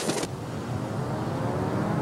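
Volkswagen Tiguan's engine running under throttle as the SUV slides on snow. A rush of noise cuts off sharply a quarter second in, leaving the steady pitched engine note.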